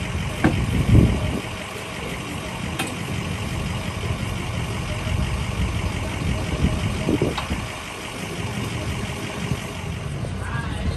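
A vehicle engine idling steadily, with a few knocks as the wheel dollies are handled: two about half a second and a second in, and another about seven seconds in.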